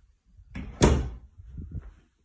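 Interior closet door being handled: one sharp knock a little under a second in, then a few softer bumps.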